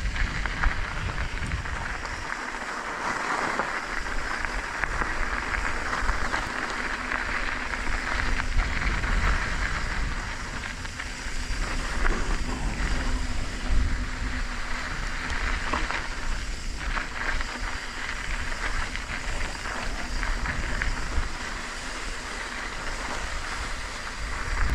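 Mountain bike tyres rolling and crunching over loose, gravelly dirt singletrack, with wind rumbling on the microphone throughout.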